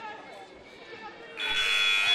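Arena game horn sounding about a second and a half in, a loud steady buzzing tone that signals the end of a timeout. Before it, crowd chatter fills the hall.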